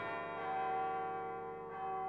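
A deep bell-like toll ringing out and slowly fading, with a second strike near the end.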